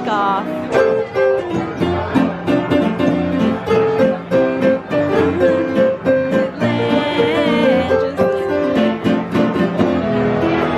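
Upright piano played live: brisk, evenly repeated chords under a melody, part of a medley of old-school EPCOT attraction songs and park music.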